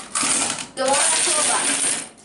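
A pile of coins poured out of a small container onto a wooden desk, clattering in two long runs with a short break a little before halfway.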